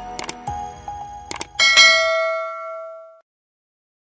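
Subscribe-button animation sound effects: a few sharp mouse-click sounds, then a bright bell ding that rings out and fades away a little after three seconds in.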